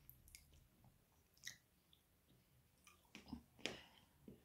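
Faint chewing of a piece of chocolate with hazelnut pieces, with a few soft mouth clicks, most of them near the end.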